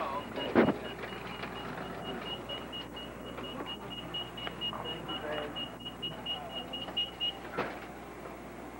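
An electronic beeper sounding short high beeps on one pitch, about five a second, from about a second in until it stops near the end. A sharp knock comes just before the beeping starts, over a steady murmur of background voices.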